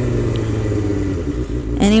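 Motorcycle engine running at low road speed, a steady low hum that eases slightly about halfway through, with a woman's voice starting right at the end.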